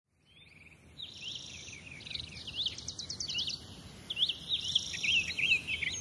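Birds singing: quick, repeated chirping whistles that rise and fall, with a high, steady trill twice, beginning just under a second in.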